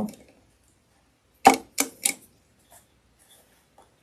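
Three sharp clicks in quick succession about a second and a half in, then a few faint ticks, from handling at the sewing machine's needle and presser-foot area while freeing caught threads.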